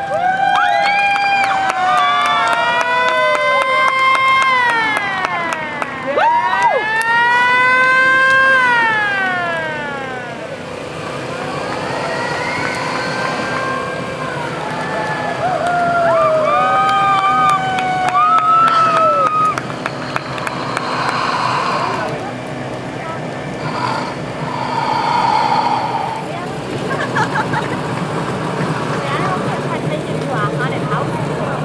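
Several sirens wailing and overlapping, each rising in pitch, holding and falling away over a second or two, for about the first twenty seconds. After that, voices of onlookers.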